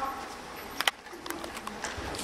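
A lull between spoken lines on a hall stage: reverberant room sound with two or three short sharp knocks about a second in.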